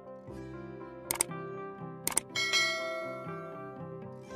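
Soft instrumental background music with plucked notes. Over it come two sharp clicks about a second apart, then a bright bell chime that rings on and fades, the sound effects of a subscribe-button animation.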